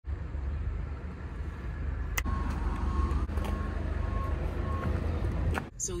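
Vehicle engine running with a steady low rumble. A faint beep repeats about twice a second through the middle, and there are a few sharp clicks.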